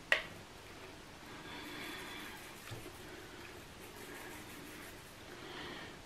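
A short knock right at the start, then quiet kitchen room tone with faint handling sounds of raw sausage meat being taken from a bowl and rolled by hand.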